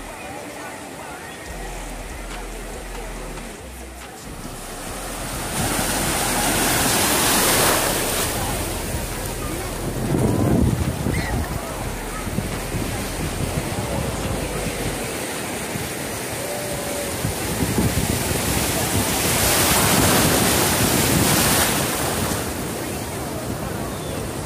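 Ocean surf washing around the shallows, with two louder swells as waves break and rush in, about six seconds in and again about twenty seconds in, and wind buffeting the microphone.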